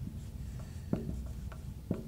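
Marker pen writing on a whiteboard: faint rubbing strokes with a couple of light ticks as letters are formed.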